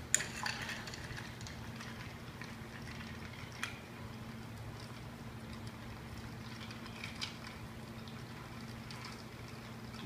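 Long bar spoon stirring ice in a glass mixing glass, faint and smooth with a few light clinks, chilling a stirred cocktail. A steady low hum runs underneath.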